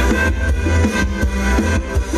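Amplified Thai ramwong dance band music, with heavy bass and drums keeping a steady dance beat.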